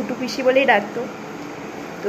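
A woman's voice speaking briefly in the first second, then only a steady hiss of room noise, like a fan or air conditioner running.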